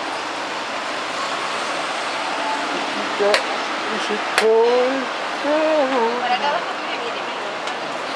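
Two sharp clicks from a blitz chess game, a piece set down on the board and the chess clock pressed, a second or so apart near the middle, over a steady rushing background noise.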